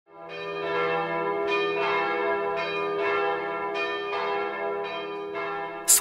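Bells chiming: a run of struck notes, a new stroke roughly every half to one second, each ringing on under the next over a low sustained hum.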